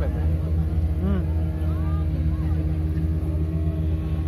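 A boat's engine running with a steady low drone as the boat moves across the lake. Faint voices are heard briefly about a second in.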